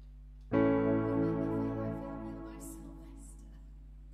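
A chord played once on a digital stage keyboard's piano sound, about half a second in, left to ring and fade away over a couple of seconds.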